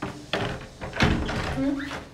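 Metal door handle and latch of a wooden door clicking and knocking as it is worked, two sharp knocks about half a second apart, with a brief vocal sound near the end.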